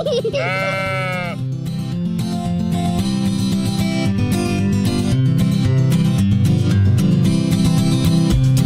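A cartoon sheep's bleat, a wavering "baa" about a second long near the start, followed by a bright instrumental music intro.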